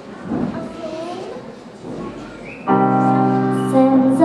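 Faint voices on stage, then about two-thirds of the way in a grand piano starts the song's introduction with a held chord.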